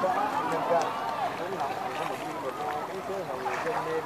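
Chatter of several people's voices, with no single clear speaker.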